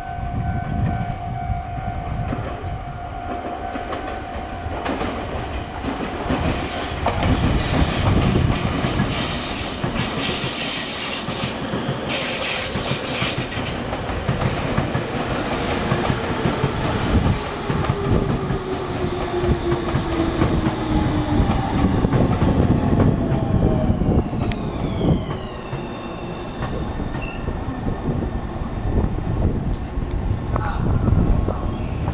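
Electric commuter train running close past, wheels clattering over the rails with high-pitched squealing for several seconds. Later its motor whine falls in pitch as it slows.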